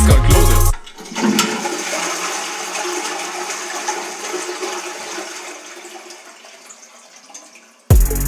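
Toilet flushing: a sudden rush of water about a second in that trails off gradually over the next six seconds.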